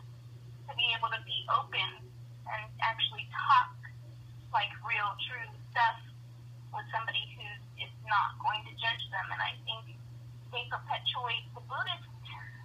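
A person talking over a telephone line, the voice thin and cut off above the speech range, with a steady low hum underneath.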